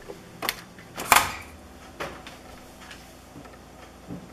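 Camera being handled and set in place: a few sharp knocks and clicks, the loudest about a second in, with fainter ticks after, over a low steady hum.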